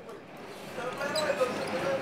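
Heritage streetcar running along its track, heard from inside the car, with knocking and a wavering tone over the running noise.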